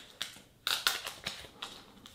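Clear protective plastic film being peeled off a JBL Reflect Flow Pro earbud charging case, giving an irregular run of sharp crinkling crackles.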